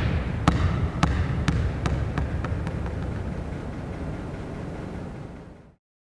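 A basketball bouncing on a hardwood gym floor, the bounces coming quicker and fainter as it settles, over a low room rumble. The sound cuts off shortly before the end.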